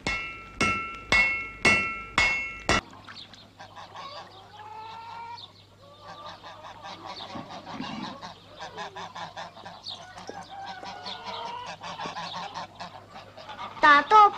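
Five loud ringing metallic strikes, a little over half a second apart, then a flock of geese honking and cackling busily for the rest of the time.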